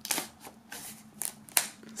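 Plastic shrink-wrap on a CD digipak crackling and scraping as it is cut open and handled, about six short rustles in quick succession.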